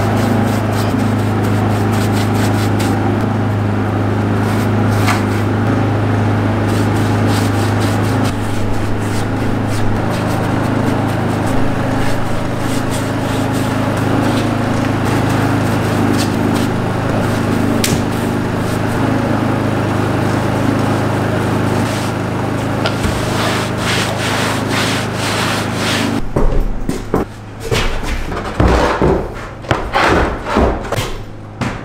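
A small motor runs steadily with a rough rubbing or sanding noise over it. About 26 seconds in this gives way to a few uneven knocks and thumps.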